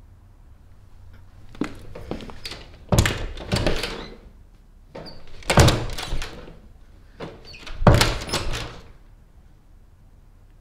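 A closet door banging and rattling in three loud bursts of thuds about two and a half seconds apart, each led by a few lighter knocks.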